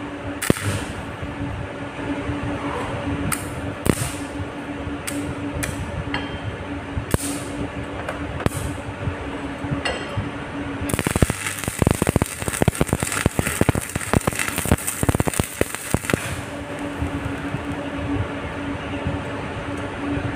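Arc-welding crackle: an electrode sputtering and popping against steel, powered by a homemade welder made from a ceiling-fan stator coil run straight off 220 V mains. A steady hum runs under it, breaking off during a denser, harsher burst of crackling from about eleven to sixteen seconds in.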